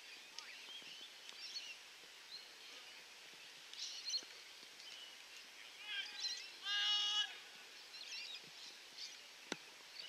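Birds chirping and twittering outdoors, with a louder, drawn-out call of steady pitch about seven seconds in and a single sharp thud near the end.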